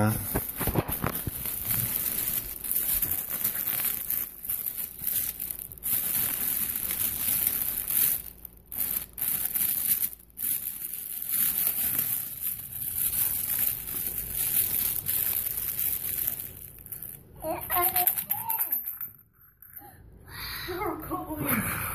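Plastic packaging crinkling and tearing as it is opened by hand, a dense crackle that goes on for most of the time with a couple of brief pauses. A child's voice comes in briefly near the end.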